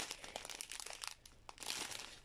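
Faint crinkling of a strip of small plastic zip-seal bags filled with diamond-painting drills as fingers handle them, with light scattered ticks.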